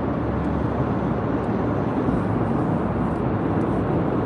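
Steady road and engine noise of a moving car, heard from inside the cabin while driving through a road tunnel, with a low rumble and no sudden events.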